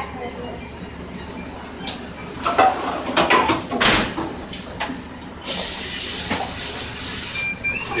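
Commercial dish-station sink: dishes and metal pans clinking and clattering in the middle, then the pre-rinse spray hose hissing steadily for about two seconds near the end.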